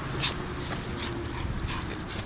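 Griffon Bruxellois dog scuffling with a football on dirt ground: a few light knocks and scrapes as it paws and mouths the ball.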